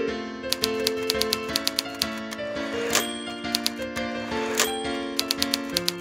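Piano music with typewriter keystroke sound effects laid over it: quick runs of clacks, each run ending in a louder strike, about three seconds in and again past four and a half seconds.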